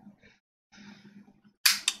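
Soft lip smacks and draws while puffing on a tobacco pipe, then about one and a half seconds in a sudden sharp breathy puff as the smoke is blown out.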